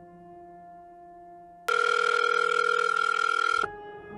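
Soft background music, then, a little under two seconds in, a loud, steady telephone ringing tone of an outgoing call that lasts about two seconds and cuts off suddenly.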